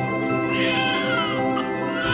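Background music with a newborn baby crying over it: one cry that arches up and slides down in pitch about half a second in, and another starting at the very end.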